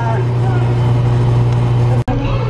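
Self-serve frozen yogurt machine running with a loud steady low hum while soft-serve is pulled into a cup. Faint voices sit on top of it.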